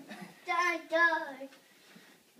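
A child's high voice making two drawn-out, sing-song notes, with no clear words.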